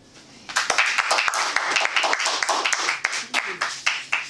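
A small audience applauding. The clapping starts about half a second in and dies away near the end.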